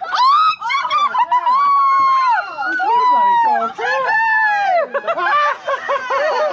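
Children's excited high-pitched voices, squealing and shouting over one another in long, sliding cries.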